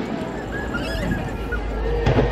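Aerial fireworks over a harbour: the low rolling rumble after a shell's bang, with onlookers' voices rising and falling about a second in, and another sharp bang right at the end.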